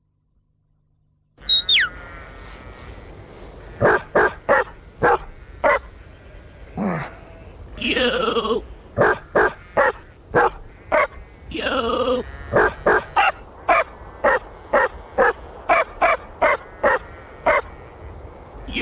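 Dog barking and howling in a steady rhythm: rows of short barks about two a second, broken by two longer howls about eight and twelve seconds in, after a second and a half of silence.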